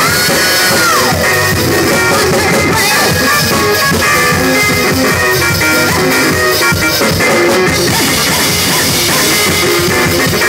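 Live gospel praise-break music: a drum kit played hard with keyboard and bass guitar in a full band groove. A high note slides down about a second in.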